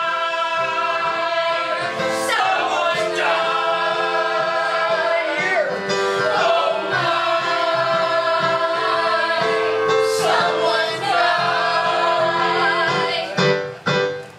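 A mixed group of men and women singing together in chorus, holding long notes in phrases of about four seconds each, cutting off shortly before the end.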